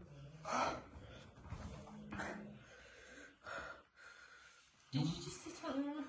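A man breathing hard through the burn of a superhot chilli: three forceful breaths, about a second and a half apart, with a low hum between them. His voice starts up near the end.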